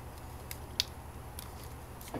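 Plastic iBolt xProDock car phone dock being handled: a few light clicks, the sharpest a little under a second in, over a steady low hum.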